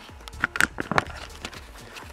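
A few light clicks and taps, bunched about half a second to a second in, over a low steady hum.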